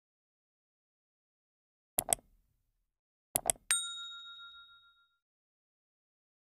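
Sound effects of a subscribe-button animation: two quick double clicks about a second and a half apart, then a single bright bell ding that rings out for about a second and a half.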